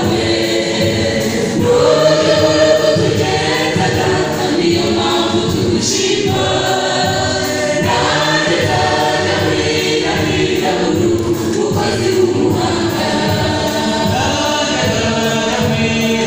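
Church choir singing a gospel song, many voices together, continuing without a break.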